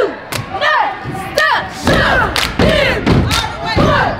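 A cheer squad shouting a chant in unison, punctuated by stomps and claps keeping the beat; the stomps get heavier about halfway through.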